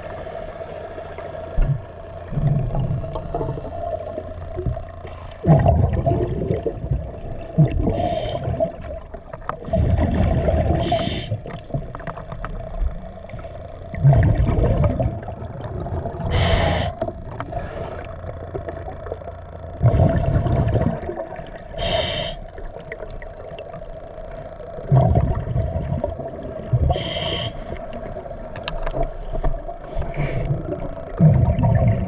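Scuba diver's regulator breathing underwater: a short hiss on each inhalation every few seconds, alternating with low, rumbling bursts of exhaled bubbles, over a steady hum.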